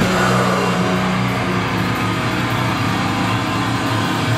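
Hardcore band playing live through a club PA: distorted electric guitar and bass holding a loud, steady droning chord, with few sharp drum hits.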